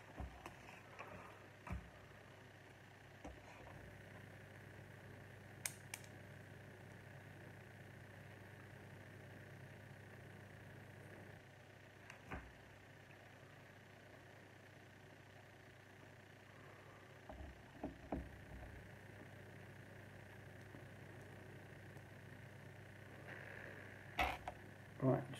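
Near silence: a steady low hum of room tone, with a few faint, scattered clicks and taps of small plastic Lego pieces being handled and pressed together.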